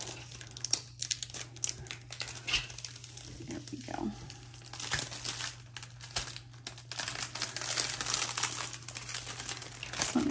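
Clear plastic protective film being peeled off a diamond painting canvas, crinkling and crackling as it pulls away from the adhesive. The film is stubborn, and the crackling grows denser in the last few seconds.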